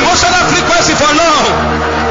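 A man's voice, its pitch rising and falling, over steady background music with sustained low chords; about three-quarters of the way through the voice pauses and only the held chord is heard.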